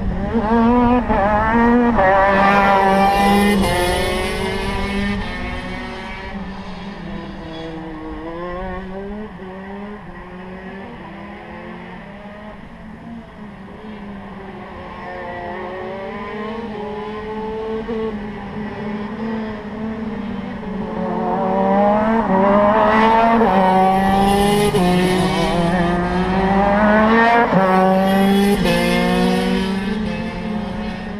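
Modena KZ 125 two-stroke shifter kart engine under hard acceleration, its pitch climbing and dropping back in repeated steps as it goes up through the gears. This happens twice, about a second in and again from about 21 s, with a quieter, lower-revving stretch between.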